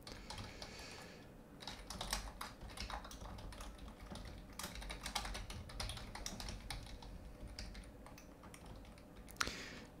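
Typing on a computer keyboard: a run of faint, irregular keystroke clicks as a line of code is entered.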